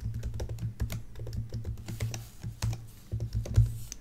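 Typing on a computer keyboard: an uneven run of quick key clicks.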